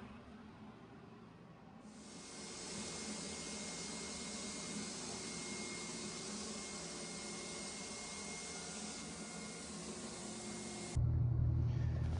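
Spray gun blowing white tub-refinishing coating: a steady hiss of air with a faint high whistle, starting about two seconds in and cutting off suddenly near the end, after which a low hum takes over.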